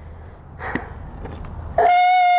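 A brief rustling scuffle, then a vehicle horn sounds once near the end: a loud, steady, single-pitched tone about two-thirds of a second long that stops abruptly.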